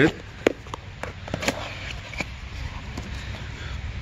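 A small cardboard box being opened and handled: a few sharp light clicks and taps with faint rustling.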